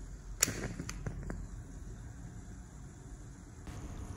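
Acetylene gas from calcium carbide in a beaker of water igniting with a sharp pop about half a second in, followed by a couple of fainter crackles as it burns.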